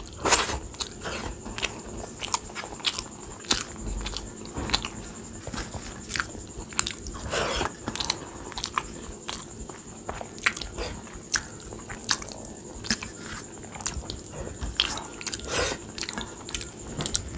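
Close-miked chewing and mouth sounds of a person eating rice with kadhi by hand: many short clicks and smacks at an irregular pace.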